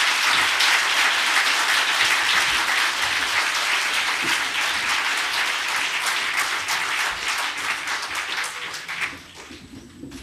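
Conference audience applauding a lecturer at the end of his talk: dense, steady clapping from a large seated crowd that thins and fades away over the last second or two.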